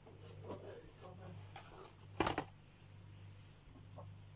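A steady low hum runs under faint voices, broken a little past two seconds in by one short, sharp noise, the loudest thing here.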